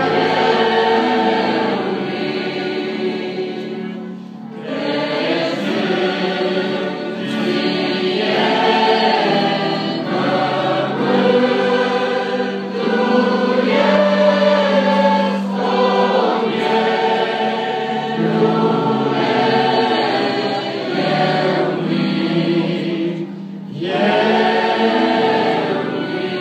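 Mixed choir of young men and women singing a hymn in Romanian over a sustained low accompaniment, with short breaks between phrases about four seconds in and near the end.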